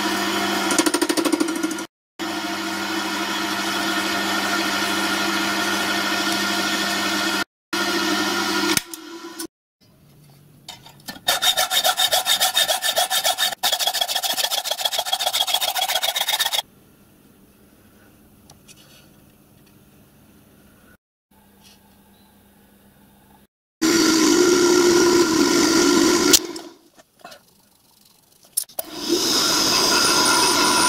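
Cast-iron brake blocks being machined in short edited clips. A milling machine runs with its cutter working the iron for the first several seconds, then hacksaw strokes cut a block held in a bench vise. A drill starts into a block near the end.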